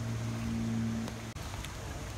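A low steady hum, with a higher tone above it that stops about halfway through.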